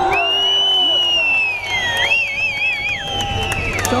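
A long, shrill human whistle from the rally crowd, held steady for a couple of seconds, dipping, then warbling a few times before holding again, over crowd shouts in the first second.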